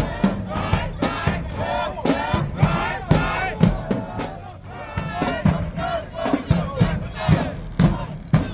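Marching band members shouting a chant together over sharp drum hits.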